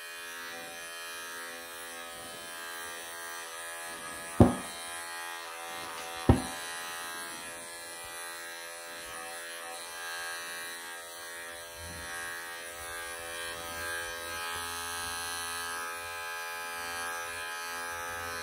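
Wahl electric pet clippers running with a steady buzzing hum as they shave matted fur from a long-haired cat's belly. Two sharp clicks cut through the hum, about two seconds apart, near the middle.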